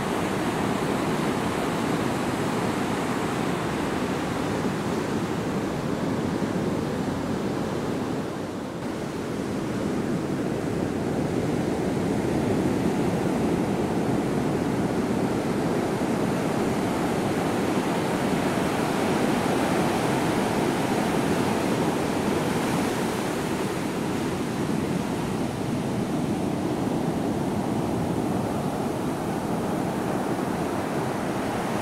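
Ocean surf breaking and washing up a sandy beach: a steady rushing of waves that dips briefly about eight seconds in.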